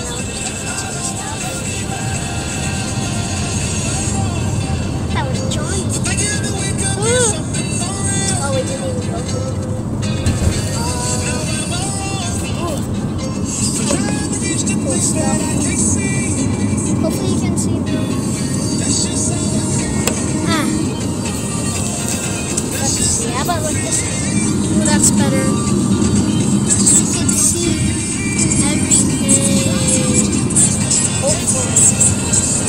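Music with singing plays inside a moving car's cabin over steady road noise from tyres on a wet highway. The music grows a little louder in the last few seconds.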